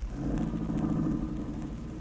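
Radio sound effect of a taxi's engine as the cab pulls away, a steady low rumble.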